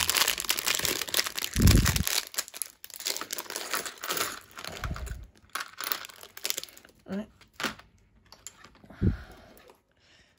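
Thin clear plastic parts bag crinkling as it is squeezed and pulled at, with spells of tearing as it is worked open with some trouble. The crinkling is loudest for the first few seconds and then comes in shorter spurts, with a few dull thumps.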